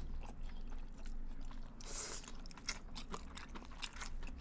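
Close-up eating sounds: noodles being slurped and chewed, a run of small mouth clicks, with a longer hissing slurp about two seconds in.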